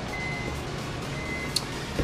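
Electronic beeping: a single high tone sounding in short on-off stretches over a low steady hum, with one light click near the end.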